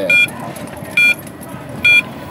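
Electronic beeper on a Yadea electric scooter sounding three short, high beeps about a second apart while the scooter rolls along slowly, with a low road rumble between the beeps.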